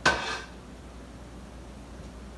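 A single metallic clank of cookware on the stovetop, with a short ring that dies away within half a second.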